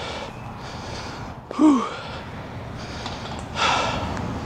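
A man breathing hard and sighing, winded after a long walk: a short voiced sigh falling in pitch about one and a half seconds in, and a louder breathy exhale near the end.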